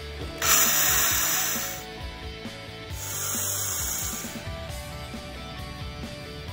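Power drill run in two bursts of about a second and a half each, its bit working at the end of a square iron baluster; the first burst is the louder.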